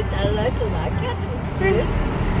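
Steady low hum of a moving car heard from inside the cabin, with a person speaking quietly over it.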